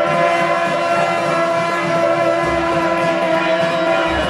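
Shaojiao, the long brass horns of a temple horn team, blowing long held notes together. Several pitches overlap in a steady, loud drone.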